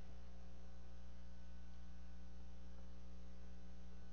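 Steady low electrical mains hum.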